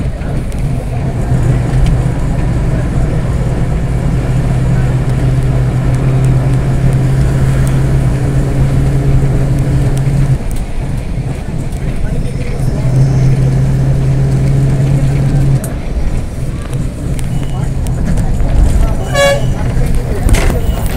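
Moving road vehicle with engine drone and rushing road and wind noise. The drone drops away for a couple of seconds about ten seconds in and again late on. A short horn toot sounds near the end.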